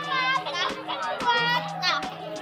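Children shouting and chattering over rebana frame drums beaten in a steady rhythm, about two strikes a second.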